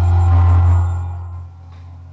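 Tail end of a TV news theme sting: a deep bass note holds, then fades out over the second half.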